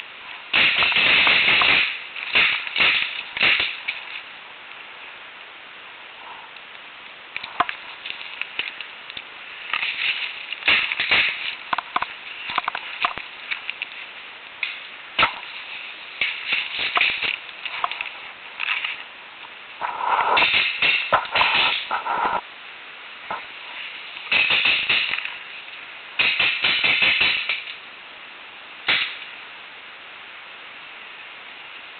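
Paintball markers firing in rapid volleys: about seven bursts of quick sharp pops, each lasting a second or two, with quieter pauses between them. The loudest bursts come near the start and about two-thirds of the way through.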